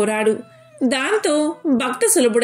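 Only speech: a woman's voice narrating in Telugu, in sustained, gliding syllables with a short pause about half a second in.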